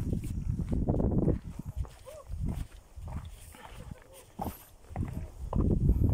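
A hiker's footsteps on a rocky dirt trail, with low rumbling noise on the microphone that comes and goes. It is loudest in the first second and again near the end.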